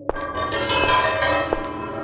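A bell-like tone is struck once and rings on with many overtones. Its highest overtones fade over about a second and a half.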